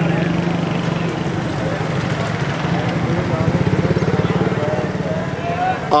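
Street traffic: small motor engines running close by, one swelling louder for about a second partway through, with voices in the background.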